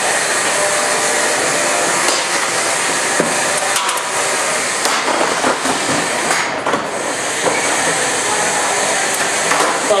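Beetleweight combat robots fighting: a spinning weapon runs with a steady whirring motor noise, and scattered sharp metal hits and clatters come as the robots collide, with a hit about six seconds in that sends one robot tumbling.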